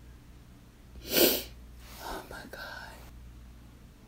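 A woman's stifled vocal outburst: one sharp burst of breath about a second in, then about a second of breathy, half-whispered voice.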